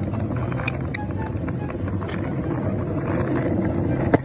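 Longboard wheels rolling over rough asphalt: a steady, low, grainy rolling noise.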